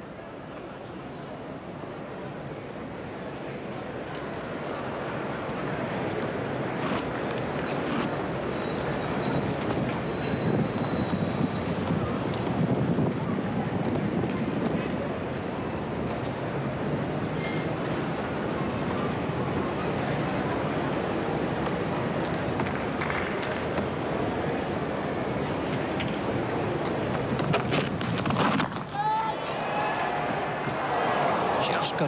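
Cricket-ground crowd noise, rising over the first six seconds or so and then holding loud and steady. Near the end it dips briefly and a few sharp knocks are heard.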